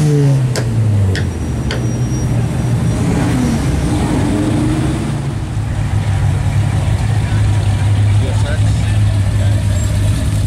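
A Ferrari 458 Italia's V8 pulling away, its engine note falling off during the first second, followed by a steady low drone of classic cars rolling slowly past in a line, with voices of onlookers.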